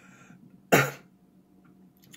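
A man coughs once, a single short sharp burst about two-thirds of a second in.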